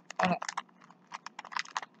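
Quick run of light clicks and crackles as a mail package is handled and opened. They start about a second in.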